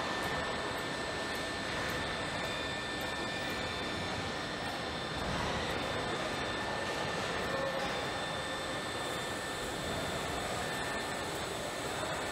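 Steady machinery noise of a car assembly hall, with a few faint high whines held at one pitch over it.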